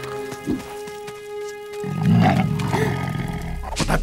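Soft background music with held notes; about two seconds in, a cartoon tiger's deep growl comes in loud over the music and runs to the end.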